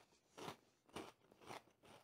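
Faint crunching of a mouthful of Cheetos corn snack being chewed, about two chews a second.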